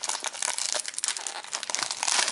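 Foil trading-card pack wrapper crinkling as it is peeled open by hand, a dense run of small crackles.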